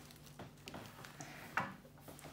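Faint handling noises from a plastic fashion doll and its packaging being worked with the fingers: a few small clicks and rustles, and one brief louder sound near the end.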